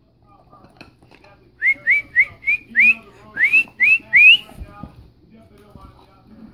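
A person whistling a quick run of about nine short, high, upward-sliding notes, starting about a second and a half in and stopping after about three seconds.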